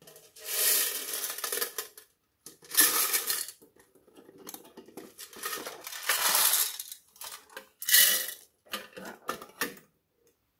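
A thin decorative metal tin being handled: foam beads rattling and rolling about inside it and the tin clattering, in about five separate bursts of a second or so each.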